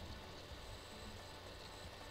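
Faint, steady background hum and hiss: room tone and microphone noise, with no distinct events.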